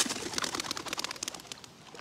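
A bird taking off, its wings flapping in a rapid flutter that starts with a thump and fades over about a second and a half.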